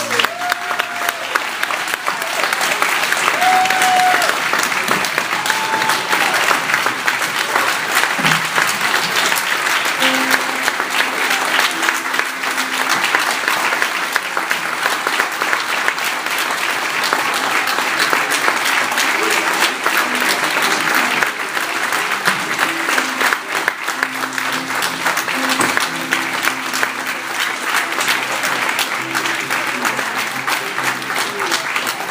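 An audience applauding steadily after a choir song, with a few short cheers early on. From about ten seconds in, quiet held musical notes sound under the clapping.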